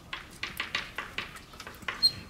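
Chalk writing on a blackboard: a quick series of short taps and scratches, about eight strokes, as letters are chalked on.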